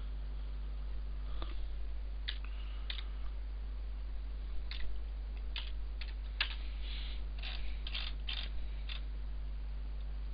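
Computer keyboard keys and mouse buttons clicked in a short, irregular run of about a dozen clicks, entering a value into a program, over a steady low electrical hum.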